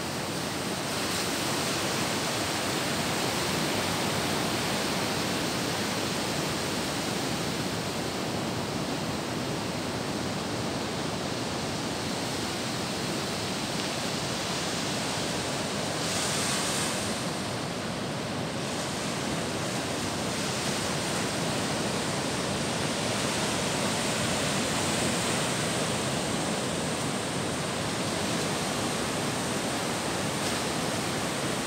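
Ocean surf breaking on a sandy beach, heard as a continuous, even rushing noise.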